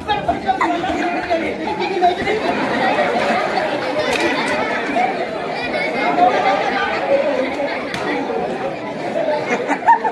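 A crowd chattering: many voices talking and calling out over one another at once, with no single speaker standing out.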